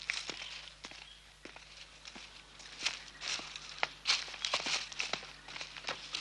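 Footsteps crunching irregularly through dry leaf litter and twigs on a forest floor, growing louder and more frequent about halfway through.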